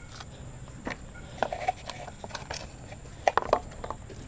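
Scattered light clicks and taps: a small plastic plant pot and a monstera cutting being handled, with a small cluster of knocks near the end.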